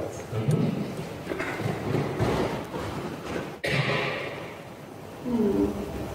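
Indistinct murmur of voices in a large room with a low rumble, broken off abruptly a little over halfway through; a voice starts again near the end.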